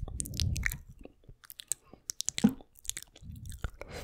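Wet mouth sounds of a tongue and lips licking and pressing on the mesh grille of a Blue Yeti microphone at point-blank range: irregular clicks and smacks with low rumbling contact noise. The sounds thin out briefly in the middle, and a stronger smack comes about halfway through.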